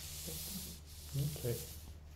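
Cloth rustling: the teacher's rakusu and robe fabric rubbing as he lets the rakusu drop back onto his chest. It is a soft hiss that fades about a second in.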